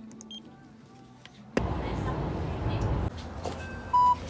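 A handheld barcode scanner gives a short high beep, then a steady vehicle-interior rumble cuts in about a second and a half in. Right at the end, a transit card reader gives one loud beep as a travel card is tapped on it.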